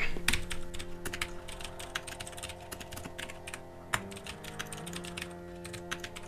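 Typing on a computer keyboard: quick, irregular key clicks, over faint background music of held notes.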